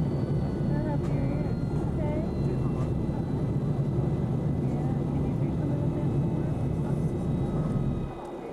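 Airliner cabin noise in flight: a steady low drone of engines and airflow, with a few thin, steady whines above it.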